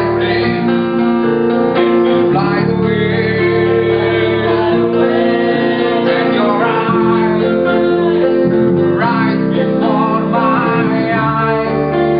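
Metal band's cover song played on guitars and bass guitar, a steady run of held chords and a sustained bass line, with a singer's voice over it.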